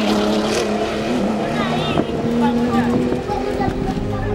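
Classic rally car's engine running hard as it passes on a dirt road, its pitch holding fairly steady with brief dips; a man laughs at the start, and voices rise over it about halfway through.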